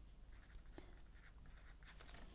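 Faint scratching of a pen writing on paper, with one small tick just under a second in.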